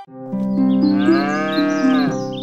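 A cow mooing once, a long call that rises and then falls in pitch, starting about half a second in, over background music with held notes.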